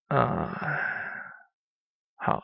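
A man's voice holding one drawn-out hesitation sound, like a long "uhh", for about a second and a half, trailing off.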